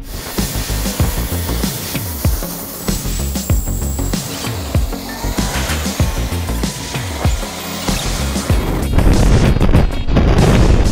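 Four-engined Air France Airbus A340 jet engines running up for takeoff, a loud, steady rushing noise that swells about nine seconds in as the jet blast reaches the fence, with music playing under it.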